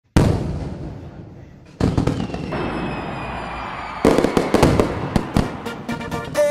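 Fireworks on a soundtrack: a sudden bang that fades over about a second and a half, a second burst with a falling whistle, then a run of rapid crackling pops.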